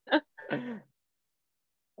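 A person's brief vocal sounds: two short bursts within the first second, the second falling in pitch.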